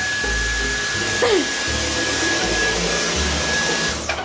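Cordless stick vacuum cleaner running on carpet: a steady high motor whine over a rushing hiss, which stops abruptly at the end.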